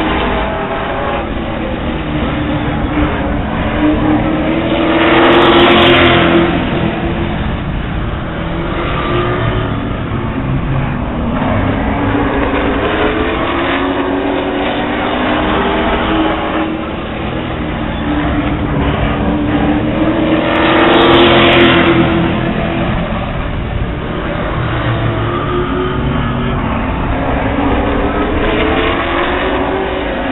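A pack of Late Model stock cars circling the oval, their engines rising and falling in pitch as they work through the turns. The sound swells loudest as the field passes close by, about five seconds in and again around twenty-one seconds.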